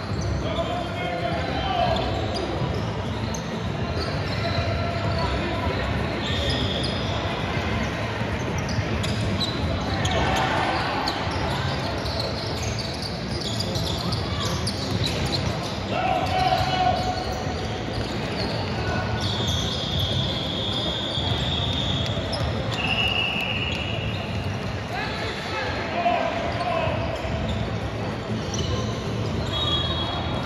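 Basketballs bouncing on the court during a game in a large, echoing gym hall, with short high squeaks coming and going, typical of sneakers on the court floor.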